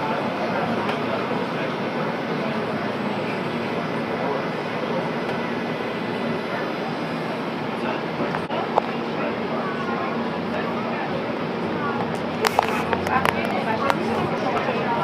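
Cabin noise inside a CTrain light rail car moving through a station: a steady rumble and hum. Passengers talk faintly in the background, and a few sharp clicks come near the end.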